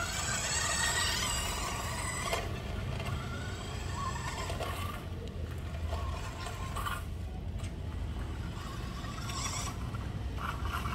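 Toy radio-controlled car's small electric motor and gears whining and its plastic wheels scraping over rough concrete. It is loudest for the first couple of seconds, then quieter as the car slows and manoeuvres, over a steady low rumble.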